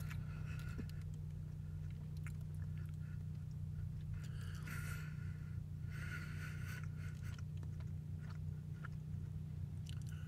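A man chewing a mouthful of a McDonald's breakfast burrito, with faint wet clicks over a steady low hum inside a car. Two brief louder noises come about halfway through.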